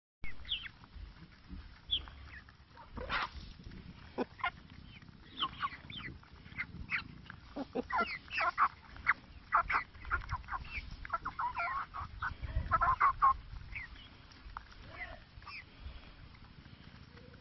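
Rhode Island Red chickens clucking in short, irregular calls and pecking feed from a hand, with quick beak taps mixed in; the sounds are busiest around the middle and thin out near the end.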